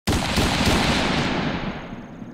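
A loud explosion-like impact sound effect that hits abruptly and dies away over about two seconds, its crackling top end fading first.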